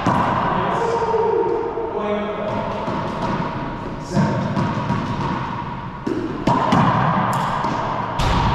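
A racquetball struck by racquets and rebounding off the walls and floor of an enclosed court, each hit ringing in the court's echo: one hit about four seconds in, then several quick ones near the end.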